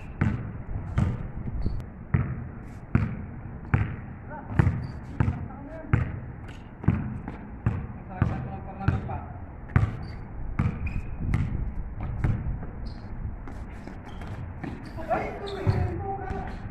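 A basketball being dribbled on a paved court, bouncing in a steady rhythm about once every three-quarters of a second. The dribbling thins out near the end.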